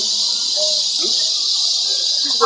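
Steady high-pitched drone of an insect chorus, with a man's voice briefly heard under it.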